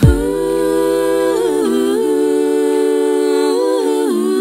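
Music: a single drum hit, then sustained humming in vocal harmony. The held chord steps down about a second and a half in and again near the end.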